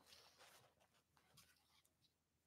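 Near silence: room tone with a faint scratchy rustle.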